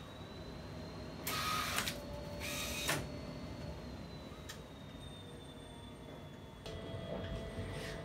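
Epson SureColor P6000 large-format inkjet printer running during a print job: two short noisy mechanical passes about a second and a half and three seconds in, over a faint steady whine, with a few light clicks later on.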